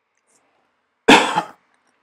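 A single cough, close to the microphone, about a second in.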